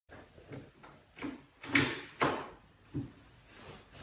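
Knocks and clicks from an antique brass chandelier being handled and plugged in on a work table after rewiring: several light knocks, with two louder ones near the middle.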